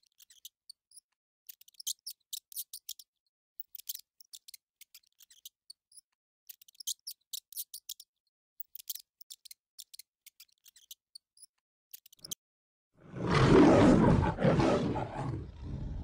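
Short bursts of light, high clicking about once a second, then a lion roaring once, loud, for about two and a half seconds near the end before fading.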